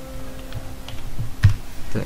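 Typing on a computer keyboard: a few light keystrokes, then one louder key press about one and a half seconds in.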